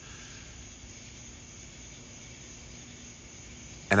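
A steady chorus of night insects: an even, high-pitched hiss-like trilling with no breaks.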